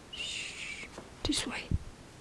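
A person whispering softly to themselves in short breathy snatches, with a soft low thump near the end.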